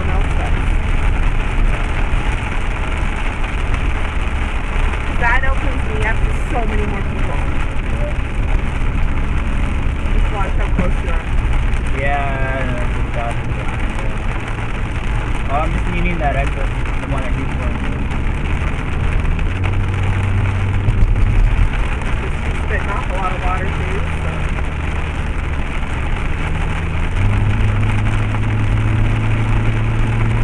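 Car interior noise while driving on a rain-soaked highway: a steady engine and tyre drone with the hiss of water off the wet road. The low hum shifts in pitch a few times, most noticeably about two-thirds of the way through and near the end.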